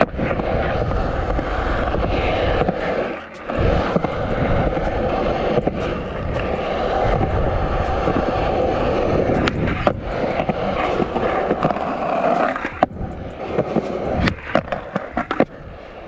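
Skateboard wheels rolling steadily over smooth concrete, with a short lull about three seconds in. Sharper clicks and knocks from the board come near the end.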